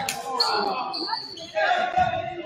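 Basketball bouncing on a hardwood gym floor, with a sharp knock right at the start, amid players' voices calling out during a scramble for the ball.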